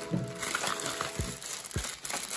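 Plastic mailer bag crinkling as it is torn and pulled open by hand, with a few short, sharp crackles.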